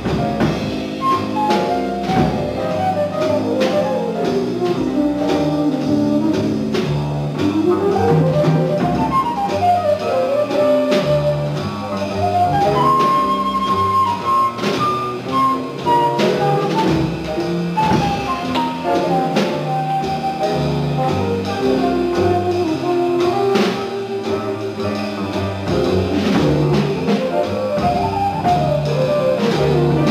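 Jazz quartet playing a C minor blues: a concert flute leads with quick runs rising and falling, over piano, double bass and drum kit.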